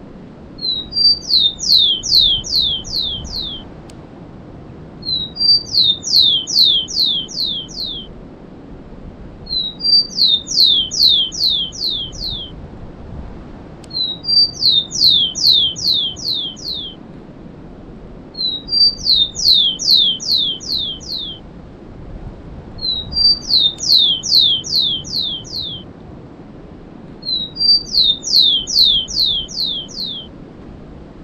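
Rufous-collared sparrow (tico-tico) singing the song type known as 'cemitério': each song is two short introductory notes followed by a quick run of about six high, falling whistles. The same song repeats about every four and a half seconds, seven times.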